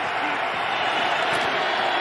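Steady stadium crowd noise in a football game broadcast: an even wash of many voices with no single words standing out.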